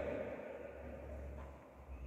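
Quiet room tone in a large, empty hall: a low steady hum, with the echo of the last words fading away at the start.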